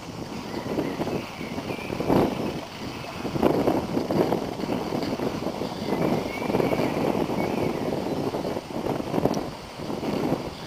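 Wind buffeting the microphone in irregular gusts, rising and falling every second or so.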